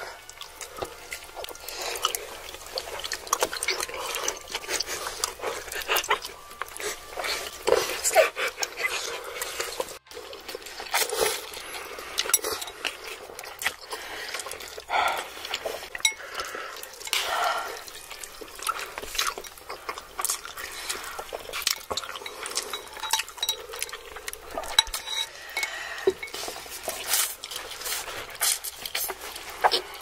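Close-miked eating: wet chewing and slurping of saucy rice cakes and then spicy noodles, with many short clicks of chopsticks and forks against bowls and a metal tray.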